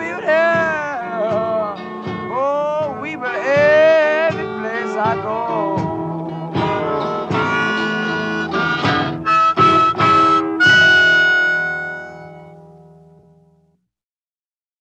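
The closing bars of a 1950s Chicago blues recording: harmonica playing bent, wailing notes over guitar and bass after the last sung word, then the band settles on a held final chord that fades out near the end.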